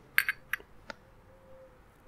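Light glass-on-metal clinks, about four in the first second, as a small glass liqueur bottle is tipped against a steel jigger while pouring.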